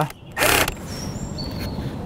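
Cordless drill-driver tightening a bolt fitted with a tapered washer into an aluminium frame. A short loud burst comes about half a second in, then a quieter steady run with a faint high whine.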